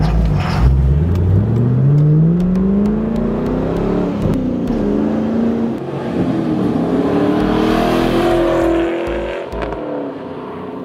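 A 2002 GMMG Tom Henry Camaro SS's V8 accelerating away, its pitch climbing through the gears and dropping back at each upshift.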